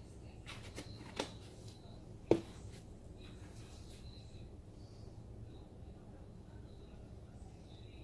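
Kitchen dishes and a cup being handled on a countertop: a few light knocks, the sharpest a little over two seconds in, over a low steady room hum.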